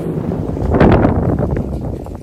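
A rushing, wind-like whoosh that swells about a second in and then fades.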